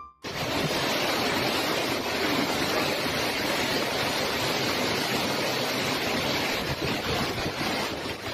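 Storm wind and heavy rain, a steady rushing noise, with gusts buffeting the phone's microphone.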